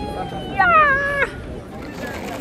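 A person's voice holds a long, high, steady note, then gives a louder cry that slides down in pitch for under a second, about half a second in.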